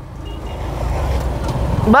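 Motorcycle riding along, engine rumble and wind noise growing steadily louder as it picks up speed.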